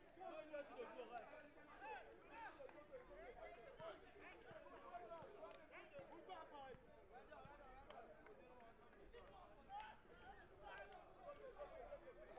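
Faint overlapping chatter and calls of many young men's voices on an open football pitch, no single voice standing out.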